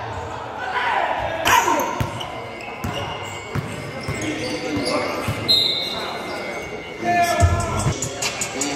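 A basketball being dribbled on a hardwood gym floor, several separate bounces, echoing in a large hall.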